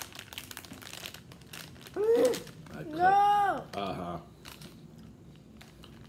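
Packaging crinkling and rustling with small clicks for the first couple of seconds, then two short wordless vocal sounds whose pitch rises and falls, the second one the loudest, as a donut is bitten into.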